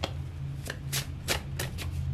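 A tarot deck shuffled by hand: a quick run of short card slaps, about six in two seconds, over a low steady hum.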